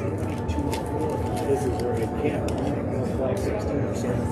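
Indistinct background chatter of several people in a large hall, with scattered short sharp clicks and knocks through it.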